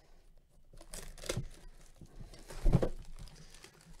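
Clear plastic shrink-wrap being torn and crinkled off a trading-card box, in short rustling bursts about a second in and again near three seconds, the later burst with a dull knock.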